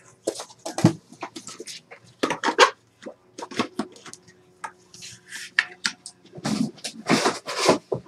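Trading-card boxes and packaging being handled on a table: irregular rustles, scrapes and light knocks, loudest about two seconds in and again near the end.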